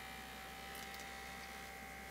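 Battery-powered vibrating rubber duck (I Rub My Duckie) running its small vibration motor: a faint, steady high buzz.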